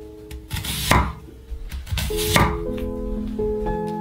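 A kitchen knife chopping on a cutting board, two cuts about 1.4 seconds apart, over soft background music.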